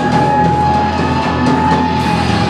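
Live rock band playing, with drum kit, bass and electric guitars, loud and dense; one high note is held steady over the band.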